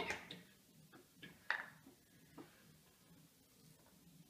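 A few light clicks and taps of a fork against a plate as raw chicken breasts are picked at, the third tap the loudest.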